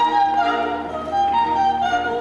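Opera music: an orchestra led by bowed strings playing a melody of short held notes that step from pitch to pitch.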